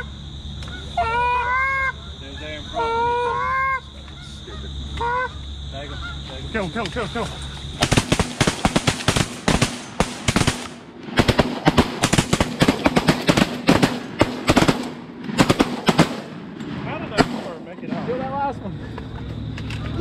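Goose honks, a few calls in the first four seconds. About eight seconds in, shotguns open up in a fast, ragged run of blasts lasting several seconds, tailing off near the end.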